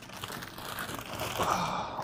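Plastic freezer bag crinkling and rustling as it is pulled out from a freezer shelf, growing louder in the second half.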